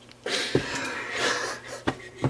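Breathless, almost voiceless laughter: one long breathy exhale that starts about a quarter of a second in and fades after about a second and a half.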